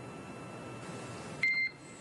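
Steady hiss of a radio communications loop, then one short, high beep about one and a half seconds in.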